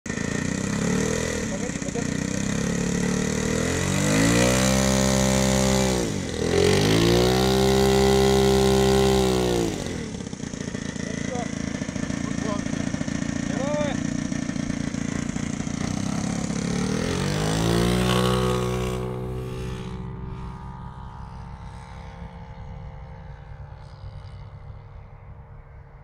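Saito FA-125 four-stroke glow engine on a large RC P-40 model, run up twice with the pitch rising and falling back, then opened up again for the takeoff. Its pitch sinks and the sound fades over the last few seconds as the plane moves away.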